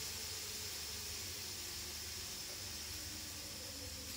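A faint steady hiss over a low hum, with no distinct knocks or clinks.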